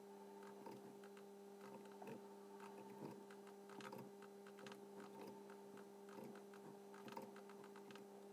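Near silence: a steady electrical hum with faint, irregular clicks of a computer mouse and keyboard, a few a second, as curve points are placed.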